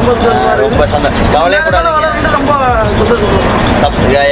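Steady engine and road rumble of a moving Ashok Leyland bus, heard from inside the driver's cabin, with voices talking over it.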